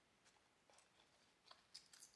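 Near silence, with a few faint, brief clicks and rustles of folded paper and tape being pressed together by hand, coming a little closer together near the end.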